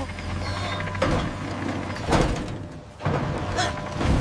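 Cartoon mechanical sound effects as a steel traction pad is lowered into place: noisy mechanical movement with a heavy clank about two seconds in, then another rush of noise about a second later.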